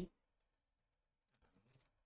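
Faint computer keyboard typing: a quick run of keystrokes starting about halfway through, as a short terminal command is typed.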